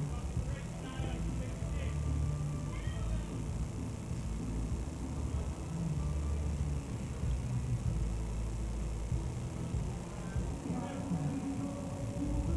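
Distant players shouting and calling to each other on a soccer field, the calls clustered in the first few seconds and again near the end, over a steady noise of pouring rain.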